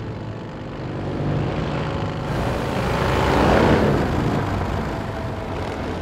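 Heavy vehicle engine running low and steady, with a rushing noise that swells to a peak a little past halfway through and then fades.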